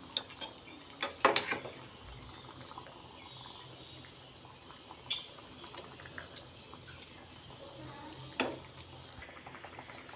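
Egg curry simmering in a steel kadai with a faint steady bubbling, and a steel ladle clinking against the pan several times as the curry is stirred, loudest about a second in and near the end.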